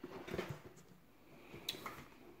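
Faint handling of a cardboard product box turned over in the hands: soft rubs and light knocks, with one sharper click near the end.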